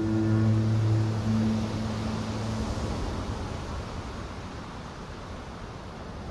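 Background music's held low bowed-string notes, cello and double bass, die away in the first two or three seconds. They leave a steady soft rushing noise.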